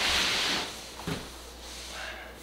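A short scraping rustle of hands sliding over a large cardboard box, about half a second long, then a soft thump about a second in.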